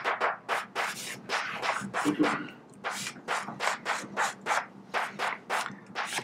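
Chalk writing on a blackboard: a quick run of short scratchy strokes, several a second, as symbols are written out.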